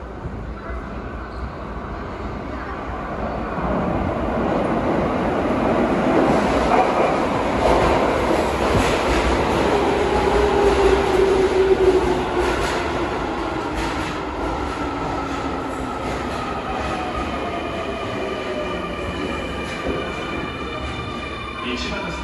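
A Keio Line electric train pulls into an underground subway platform. Its rumble builds to a peak about halfway through, then its motors whine in several tones that fall steadily in pitch as it brakes and slows.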